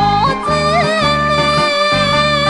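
Japanese ondo dance song: a female singer holds ornamented, wavering notes over an orchestral accompaniment with a steady beat.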